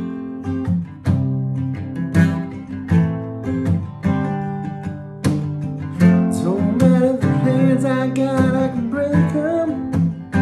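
Capoed acoustic guitar strummed through the song's G, C, Em and D chords, with strong strokes about once a second. From about six seconds in, a voice sings along over the strumming.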